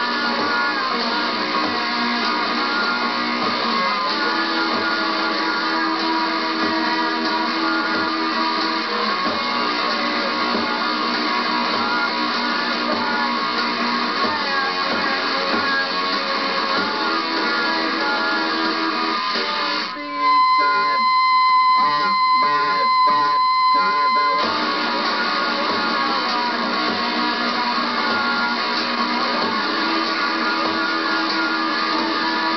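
Punk-rockabilly band playing live on a radio broadcast, led by strummed electric guitar. About twenty seconds in, a loud steady high whine takes over for about four seconds before the band sound returns.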